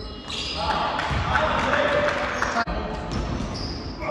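Indoor basketball game sounds in a large echoing gym: players' shouts, short high squeaks of sneakers on the hardwood court and the ball bouncing. The sound breaks off abruptly about two-thirds of the way in, where the footage cuts to another play.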